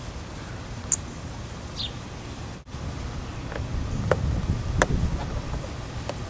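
Hand-fitting of a Jeep Cherokee XJ's overhead dome light: a few sharp plastic clicks, most in the second half, as the bulb goes in and the lens cover snaps on, over steady low background noise.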